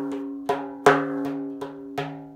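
Frame drum played by hand in a 9-beat rhythm: finger strokes about every third of a second, with one strong accented stroke about a second in and lighter strokes around it. The accent alternates between the right and left hands, and the drumhead rings on with a sustained tone between strokes.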